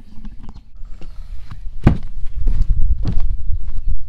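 Knocks and handling thumps as a phone is set down on a pier deck, the sharpest about two seconds in and another about a second later, then footsteps on the deck over a loud low rumble on the microphone.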